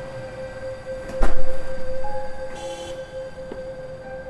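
A film soundtrack drone holds one steady tone throughout. A little over a second in, a loud, deep boom hit strikes and rings away over about a second and a half. A brief rustling clatter follows shortly after.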